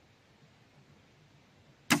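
Doom Armageddon crossbow firing a 20-inch bolt: one sharp, loud snap of the string release near the end, after a stretch of near quiet.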